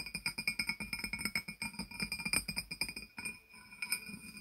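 Fingers tapping rapidly on a glazed ceramic jar, a quick run of clinking taps over a ringing tone that thins out near the end.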